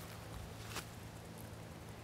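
Faint outdoor background during a pause in speech: a steady low hum under a light hiss, with one soft click about three quarters of a second in.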